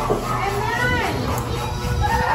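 Children's voices chattering and calling out over one another, a hubbub of kids talking at once in a room.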